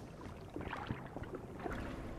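Faint watery ambience of aquarium water, a soft sloshing hiss with small scattered bubbling ticks.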